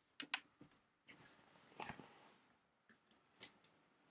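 Handling noise close to the phone's microphone: a couple of sharp clicks, a rustle lasting about a second and a half, then a few more clicks near the end.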